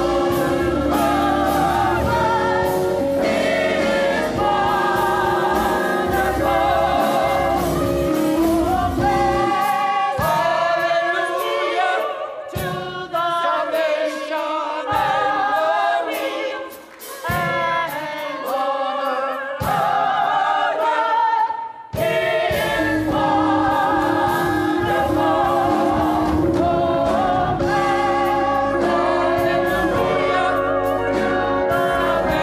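Gospel choir singing a hymn with mixed voices over a low accompaniment. About ten seconds in the low backing drops away, leaving mostly voices with a few brief dips in level. It returns about twenty-two seconds in.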